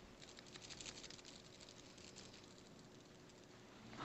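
Faint, rapid soft taps of a makeup sponge dabbing against the skin of the cheek, thickest over the first two seconds or so and thinning out after.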